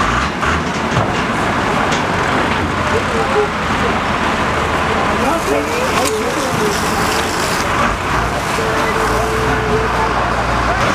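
Loud, steady noise of a large burning hay store and the fire-fighting vehicles' engines running, with people's voices calling out over it.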